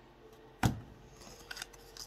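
Playing-card-sized oracle cards being handled and shuffled in the hands. There is one sharp snap or click about two thirds of a second in, and a couple of faint clicks later.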